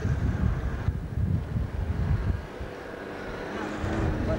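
Low, uneven rumble of a vehicle driving over a rough dirt track, with wind buffeting the microphone. It eases off a little past the halfway point.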